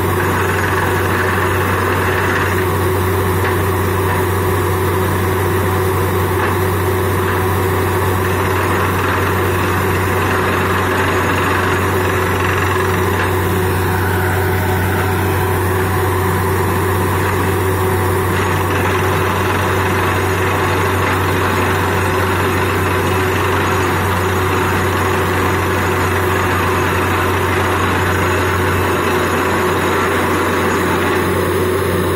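Truck-mounted borewell drilling rig running steadily while drilling: a loud, unchanging low engine and compressor drone under a constant hiss, as air drives mud and water up out of the hole.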